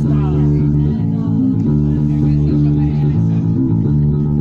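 Live band playing held chords on an Ibanez EHB1265ML five-string electric bass and electric guitar, the chords changing every second or so. A voice is heard briefly near the start.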